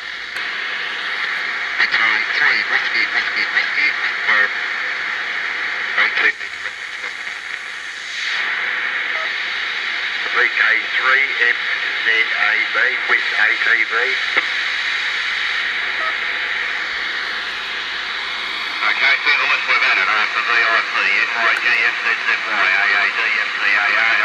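Two-metre amateur FM repeater voice traffic coming through an old AM car radio's speaker, slope-detected by tuning off to the side of the signal. The voices are thin and tinny over a steady hiss, with a stretch of plain hiss and no voice about six seconds in.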